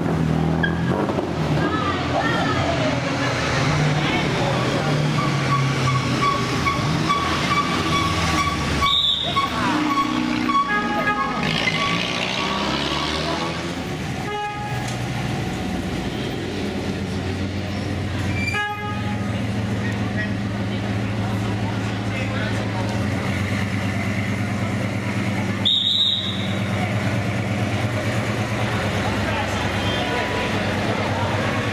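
Engines of vintage rally cars running at low speed as they pass one after another, with a crowd talking. From about six seconds in, a steady high tone holds for several seconds, and there are a few sharp clicks.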